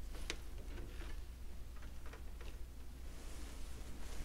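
Quiet room tone with a steady low hum and a few faint, short clicks, the clearest about a third of a second in.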